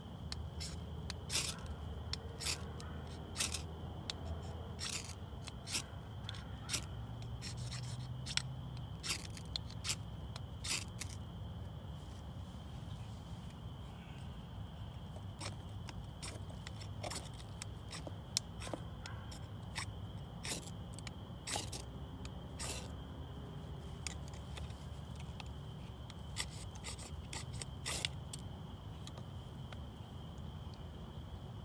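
Knife blade scraping in sharp, irregular strokes against a bundle of bark tinder and kindling while lighting a fire, with bunches of strokes in the first half and again near the end. The tinder is damp and slow to catch.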